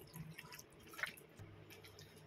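Faint, wet squelches of a hand working yogurt and salt into raw chicken pieces in a bowl, a few soft squishes in the first second.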